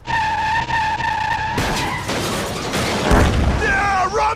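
Cartoon car sound effects: a steady, high tyre squeal for about a second and a half, then a rushing noise with a low thud about three seconds in. A man starts yelling near the end.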